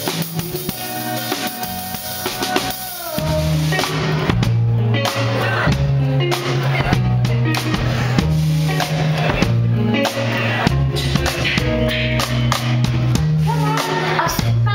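A band playing live, with the drum kit to the fore: bass drum, snare and rimshots over bass and guitar. About three seconds in, the full band comes in louder with a steady bass line.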